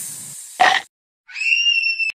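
Cartoon sound effects: a snake's hiss trailing off, a short sharp grunt-like sound about half a second in, then after a moment of silence a thin whistle that rises and holds steady near the end.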